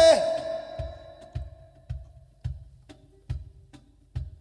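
A male flamenco singer's martinete line ends on a falling note just at the start, and its echo dies away. Through the breath pause that follows, only a dull percussion knock keeps the beat, about two knocks a second.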